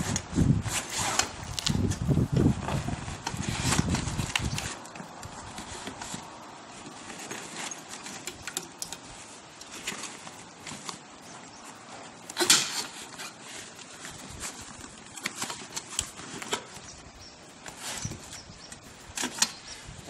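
Clicks, rattles and knocks of a folded Birdy bicycle's metal frame, pedals and handlebar being shifted and pressed into a fabric travel bag. The handling is heavier in the first few seconds, and there is one sharp knock about twelve seconds in.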